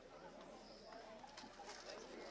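Near silence: faint outdoor ambience, with a faint high whistle about half a second in and a few faint ticks near the end.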